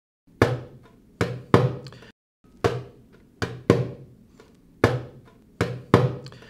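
A drum struck in a slow, throbbing pattern like a heartbeat, alternating single beats and quick pairs of beats. Each stroke rings briefly with a low pitched tone.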